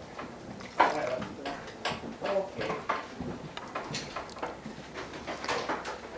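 Scattered light clinks and knocks of a ladle against a stainless stockpot, a canning funnel and glass jars while hot liquid is ladled into jars of squash, with a faint voice in the background.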